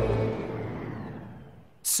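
Rumble of a galloping horse's hooves, fading away over about a second and a half.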